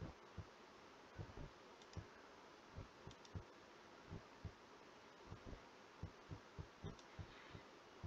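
Near silence, broken by faint, irregular low clicks and thumps from a computer mouse in use, about two or three a second.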